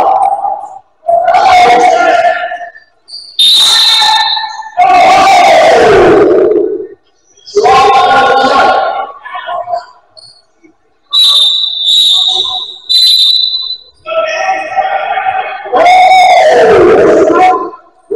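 Loud, drawn-out vocalizing in several long phrases whose pitch slides up and down, more like singing or chanting than plain talk. In the gaps come short, high referee-whistle blasts: one about four seconds in and three in quick succession around twelve seconds in.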